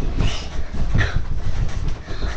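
Dull thumps, rustling and low rumble of a person bouncing and moving on a bed, with the webcam shaken by the mattress.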